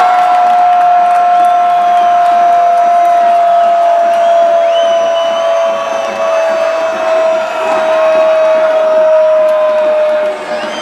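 A Brazilian football commentator's long held goal call: one unbroken shouted note that falls slowly in pitch, over crowd cheering.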